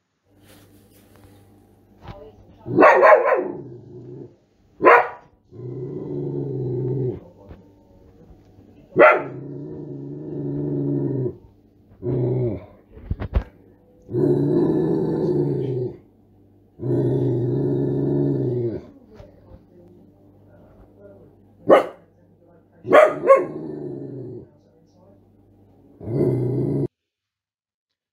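A dog's recorded barks, short and sharp, interspersed with longer, low growls of a second or two each. It is a complex run of sound that varies in pitch and rhythm.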